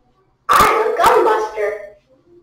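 Whiteboard eraser rubbed across a whiteboard, one long squeaking stroke starting about half a second in and lasting about a second and a half.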